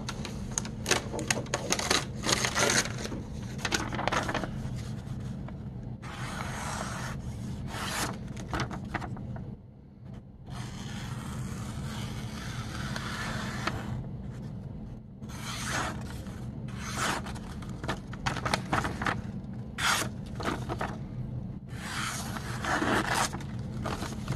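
A freshly sharpened folding knife slicing again and again through a hand-held sheet of lined paper, each cut a short scraping rasp, with paper rustling between cuts and a brief pause about midway.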